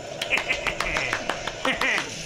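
A person clapping hands quickly and rapidly, about seven claps a second, in excitement.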